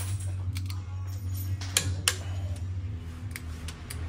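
Sharp metallic clicks and taps, about eight at irregular spacing, from a steel hand tool working on the valve gear in the valve pockets of an open aluminium cylinder head, over a steady low hum.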